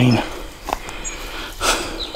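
A man's voice ends a word at the start. Then outdoor background hiss follows, with a soft knock, a louder rustle or crunch near the end, and a faint high bird chirp.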